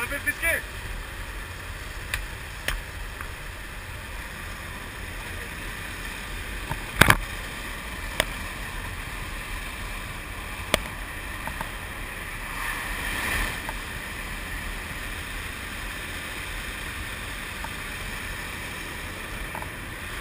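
Steady rush of wind and engine noise inside a small skydiving aircraft's cabin with the door open, with a few sharp knocks, the loudest about seven seconds in.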